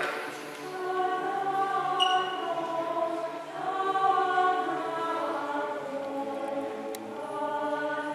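Choir singing Orthodox church chant, several voices together on slow, held notes.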